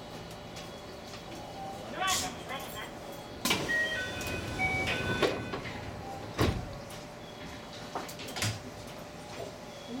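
Station platform sounds around a stopped train: scattered knocks and clunks, the one about six and a half seconds in reaching lowest, with several short beeping tones in the middle and faint voices underneath.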